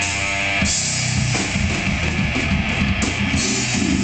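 A death metal band playing live: distorted electric guitars over a drum kit. About half a second in, the held chords break into a fast, choppy riff.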